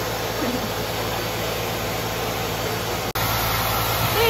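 Pet grooming force dryer blowing air through its hose onto a dog's coat: a steady rushing noise over a low motor hum, which cuts out for an instant about three seconds in.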